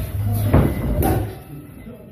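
Two sharp smacks about half a second apart over background music and voices, which turn quieter in the second half.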